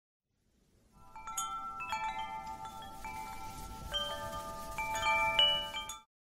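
A cascade of chimes: many bell-like tones struck one after another, overlapping and ringing on. The sound swells in over the first second and cuts off suddenly at the end.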